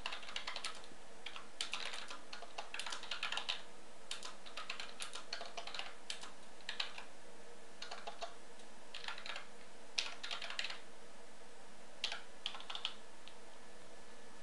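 Typing on a computer keyboard: runs of quick keystrokes with short pauses between them.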